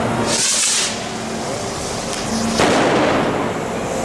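A short high hiss about half a second in, then a single sharp bang about two and a half seconds in that rings out briefly between the buildings, in a street clash where tear gas is in use.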